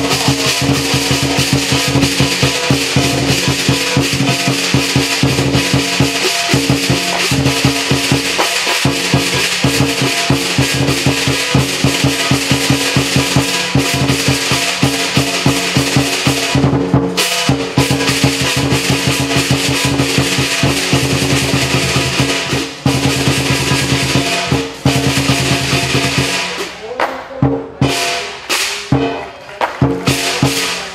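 Lion dance percussion: a large drum beaten fast with crashing cymbals and a ringing gong, playing continuously and loud. It breaks off briefly about halfway, and the beating turns choppy and broken in the last few seconds.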